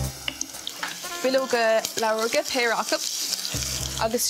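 Minced garlic and bay leaves sizzling in oil in a small saucepan, stirred with a wooden spoon. A voice talks over it through the middle.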